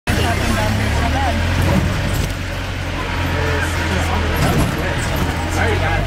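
A jeep's engine running with a steady low hum, heard from inside the cabin while driving. Light rattles and street voices sound over it.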